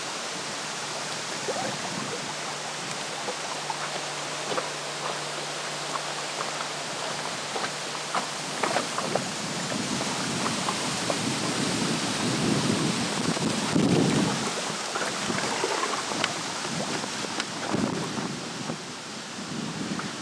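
Wind buffeting the microphone over choppy water lapping and splashing around an inflatable boat, with a faint steady hum from the electric trolling motor for a few seconds early on. The water sloshing grows louder about two-thirds of the way through.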